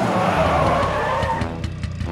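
Cartoon Batmobile's tyres screeching in a skid, fading out about a second and a half in, over background music.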